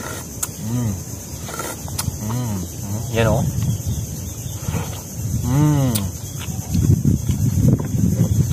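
A man eating raw blood clams from the shell: a few short 'mmm' hums that rise and fall in pitch, with sharp clicks and mouth and chewing noises that grow denser near the end.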